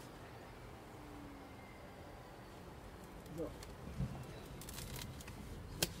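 Honeybees buzzing faintly around an open Mini Plus hive, with a few sharp knocks and clicks near the end as the hive lid and boxes are set back in place.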